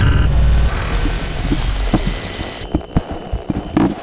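Edited trailer sound effects: a short digital glitch burst with a low rumble at the start, which fades over the next couple of seconds into scattered sharp clicks and knocks.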